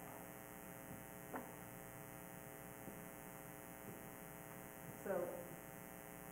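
Faint, steady electrical mains hum with its overtones, picked up through the recording or sound system. A few faint footsteps on a stage floor are heard, and a woman says "so" near the end.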